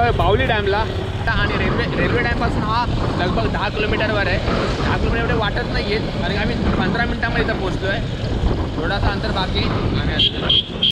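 Wind rushing over the microphone on a moving motorcycle, with the engine running underneath, a steady low roar. A man's voice carries on over it throughout.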